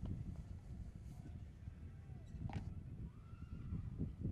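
A horse galloping on turf: dull hoofbeats in the rhythm of its stride, about two a second, with a short, faint higher sound about two and a half seconds in.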